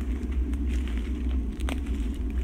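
A steady low rumble on the microphone, with a light hiss above it and one faint click near the end.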